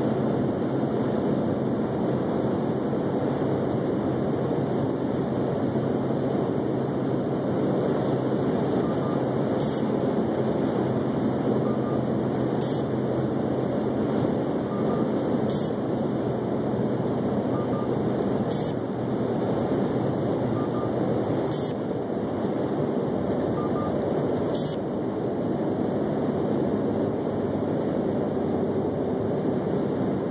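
Steady road and wind noise of a car driving along a highway, picked up inside the vehicle. From about ten seconds in, a faint short high tick repeats every three seconds, six times in all.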